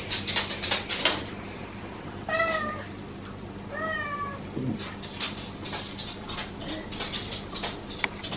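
Domestic tabby cat meowing twice in quick succession, short meows that rise and fall in pitch, over scattered light clicks and a steady low hum.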